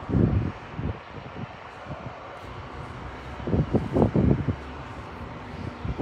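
Wind buffeting a phone's microphone in two low, rumbling gusts, one at the start and one about four seconds in, over a steady outdoor background.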